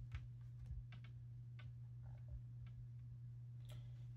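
Faint light ticks and taps of tarot cards being handled and laid down on a table, scattered irregularly, over a steady low hum.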